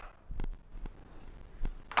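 Footsteps coming down a staircase: a few sharp taps about half a second apart over a low hum.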